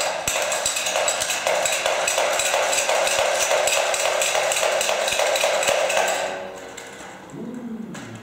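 A metal toy spinning top whirring with a fast, dense rattle that dies away about six seconds in, followed near the end by a short falling tone.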